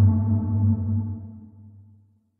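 The tail of a Godzilla (2014) monster sound effect: a deep, low tone that fades away over the two seconds, its higher overtones dying first, until it is gone near the end.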